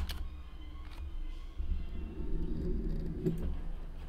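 A single sharp computer-keyboard keystroke right at the start, then a low steady hum with faint, indistinct sounds in the middle.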